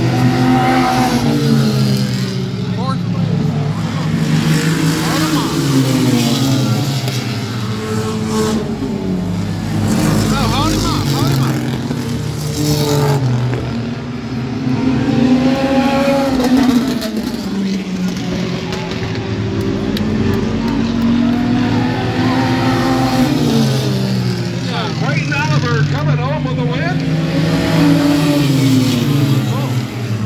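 Renegade-class stock cars racing on a short oval. The engines rise and fall in pitch again and again as the cars go through the turns and pass close by.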